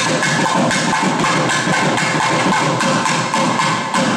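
Thavil, the South Indian barrel drum, played in a fast, dense run of strokes for temple procession music.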